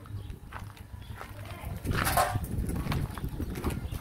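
Dogs snuffling and moving about close by on gravel, a low rough sound that grows louder about two seconds in, with a brief breathy hiss just after.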